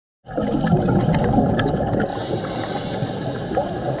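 Water running in a steady rush with some gurgling.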